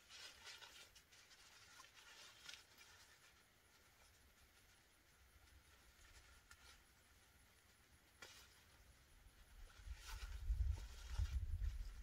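Faint rustling and scraping of polyester tent fabric as the rolled-up door of a pop-up privacy tent is handled and fastened with its loops, with a small click after about eight seconds and a low rumble near the end.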